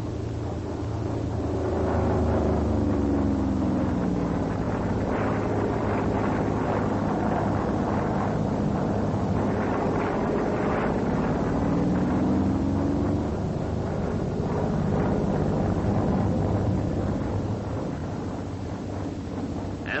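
Vought F4U Corsair fighter's radial engine and propeller droning steadily through an Immelmann, its pitch sliding down early on and back up near the middle.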